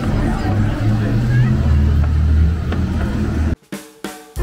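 Crowd chatter over bass-heavy music with a drum beat. The sound cuts out abruptly near the end.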